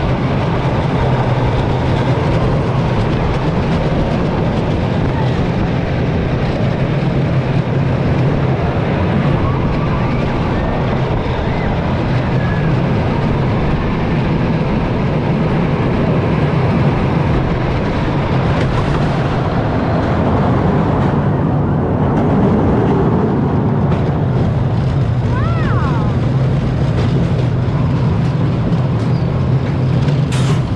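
Jaguar! steel roller coaster train running along its track, a steady loud rumble of the wheels on the rails.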